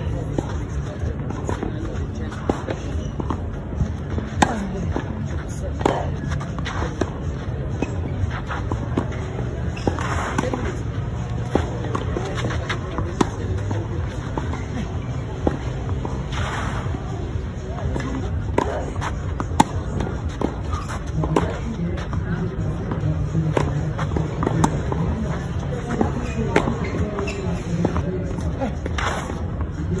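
Tennis rally on a clay court: rackets striking the ball, sharp cracks every second or two, over a steady low background rumble.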